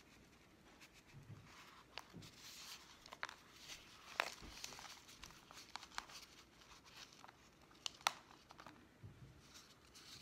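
Thin black plastic nursery pot crinkling and clicking as it is squeezed and flexed, with the rustle of soil and roots tearing loose as a succulent is worked out of it. Irregular small clicks, the sharpest about four seconds in and again about eight seconds in.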